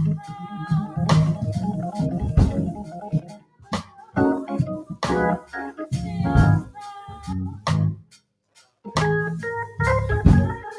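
Organ music playing sustained chords, with sharp hits between them; the playing breaks off briefly near the end and then resumes.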